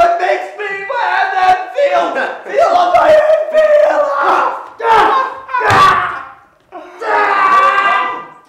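Several voices laughing and shouting together in loud, drawn-out jeering cries, in bursts with short breaks.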